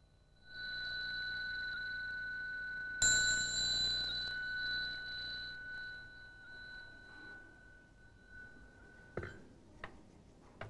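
A metal meditation-hall bell rings a steady high tone, is struck about three seconds in and slowly rings down, marking the end of a sitting period. Two or three sharp knocks follow near the end.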